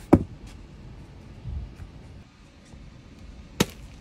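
A large roll of webbing strap set down onto a stack of rolls, giving one sharp knock just after the start and a dull thump about a second and a half in. Another sharp knock comes near the end.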